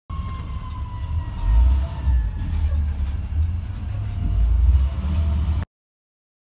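Emergency vehicle siren, a thin tone falling slowly in pitch over the first couple of seconds, over a heavy low vehicle rumble that swells twice. It cuts off suddenly near the end.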